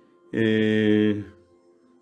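A man's voice holding one steady, low chanted tone for about a second, starting a moment in, then stopping.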